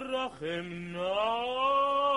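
Male cantor singing cantorial chant without words: a short note, a brief break, then a low note that slides up into a long, steadily held higher note.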